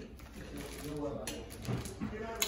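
Faint, low voices in a quiet room, with a single light click about a second in.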